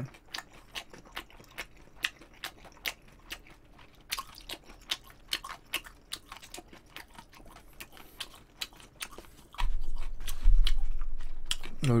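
Close-miked chewing of food, with short wet mouth clicks about three a second. Near the end a deep rumble, the loudest sound, lasts about two seconds.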